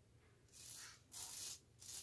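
Razor scraping through shaving lather and stubble on the cheek: three short rasping strokes, starting about half a second in.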